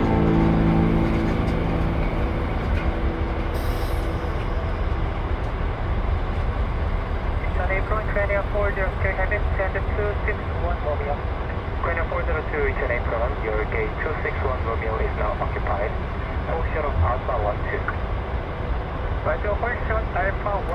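Steady low vehicle engine rumble heard from inside, with music fading out in the first two seconds. Indistinct voices join in from about eight seconds in.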